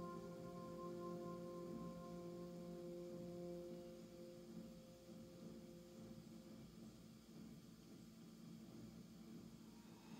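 Quiet, calm ambient background music: a few held, bell-like tones that fade away over the first several seconds, leaving near silence.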